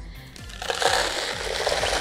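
Rock salt poured from a cardboard box into a tin can of ice: a steady rush of falling grains that starts about half a second in. Background music plays underneath.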